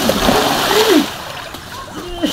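A person falling bodily into shallow floodwater: one large splash, with the water noise dying away after about a second. A short voice cry sounds over the splash.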